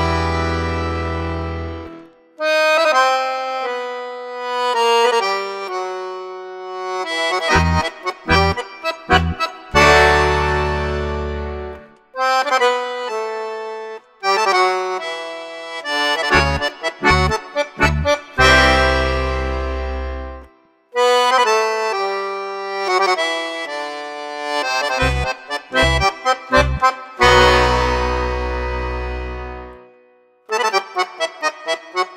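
Accordion playing a Spanish-style fantasia: melodic passages over groups of short, sharp bass notes, each phrase ending on a long held full chord with deep bass, four times over, with brief breaks between phrases.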